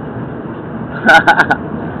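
Steady cabin noise of a moving car, with a short burst of four quick, sharp pulses about a second in.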